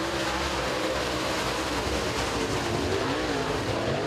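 A pack of dirt super late model race cars running together at racing speed. The engines overlap in a dense, steady drone, their pitch rising and falling as the cars come through the turns.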